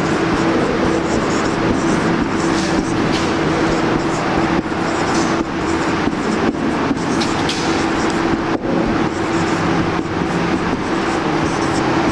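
A marker pen writing on a whiteboard in short strokes over a loud, steady mechanical background noise with a constant hum.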